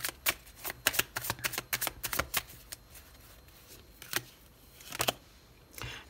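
A deck of Tarot de Marseille cards being shuffled by hand: a rapid run of card flicks and snaps for the first two seconds or so, then a few scattered snaps.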